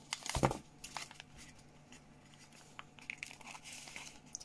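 Handheld embossing plier squeezed on a matte black sticker, with a sharp crunching click about half a second in. This is followed by scattered light clicks and crinkling of the sticker roll's paper as it is handled and drawn out of the plier.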